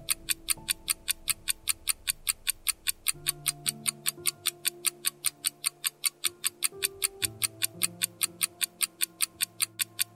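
Clock-ticking sound effect for a countdown timer, about four sharp ticks a second, over soft background music with long held notes.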